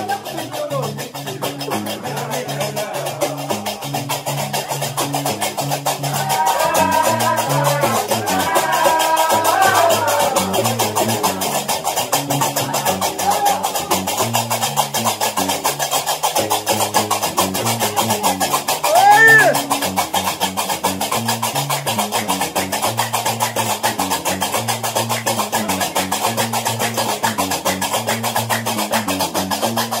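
Gnawa music: a guembri plays a repeating low bass riff under the steady, rapid clatter of qraqeb metal castanets. Group singing comes in about six to ten seconds in, and a short, loud rising-and-falling cry rings out about two-thirds of the way through.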